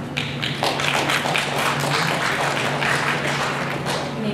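Audience applauding, starting just after the beginning and easing off near the end.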